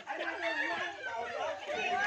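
Several people talking over one another at once, an overlapping chatter of voices with no clear words.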